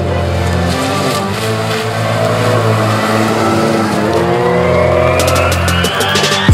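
Background music building up: sustained bass notes, a pitch sweeping steadily upward over the last couple of seconds and a quickening drum roll near the end. A car drives past underneath it.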